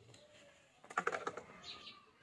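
A quick run of light clicks and clatter, like small hard objects knocking together, about a second in and lasting under half a second.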